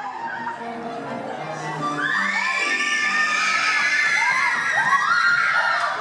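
Pit orchestra music from a stage musical, with high voices gliding up and holding over it from about two seconds in, twice.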